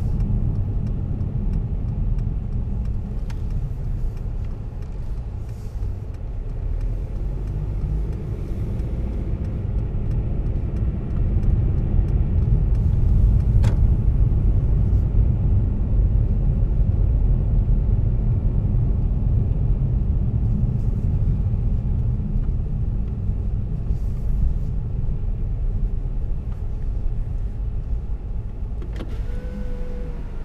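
Steady low rumble of road and tyre noise inside the cabin of a Mercedes 220d 4MATIC driving on a snow-covered road; the rumble grows a little louder for a few seconds in the middle. There is a single click about halfway through, and a short whine with a step in its pitch sets in near the end.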